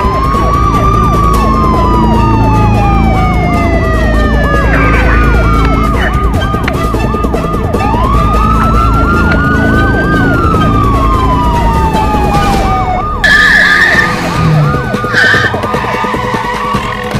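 Police siren sounding: a slow wail that climbs and then falls away, twice, over a fast warbling siren tone. Both cut off about thirteen seconds in, and a sudden loud sound follows.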